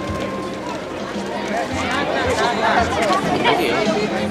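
Crowd chatter: many overlapping voices, children's among them, getting denser and louder about a second and a half in.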